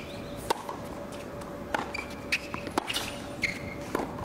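Tennis rally on a hard court: sharp pops of the ball off racket strings and off the court, coming irregularly a fraction of a second to a second apart, the loudest about half a second in.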